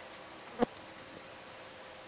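Whiteboard marker tapping once, sharp and short, on the board about half a second in, over a faint steady background hum.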